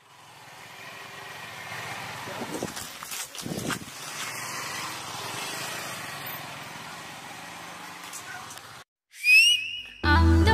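Steady outdoor background noise, then a brief silence and a short, loud rising whistle near the end.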